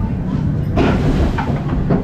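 Roller coaster train rolling along its track: a steady, loud low rumble.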